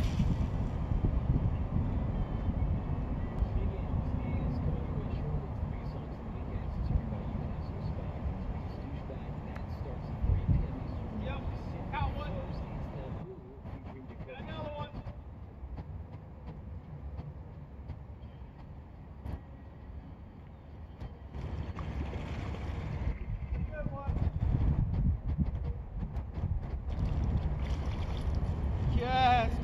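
Wind buffeting the microphone as a steady low rumble, easing off for several seconds in the middle, with faint distant voices now and then.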